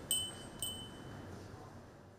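A wind chime ringing: two clear, high strikes about half a second apart, each ringing on and slowly fading.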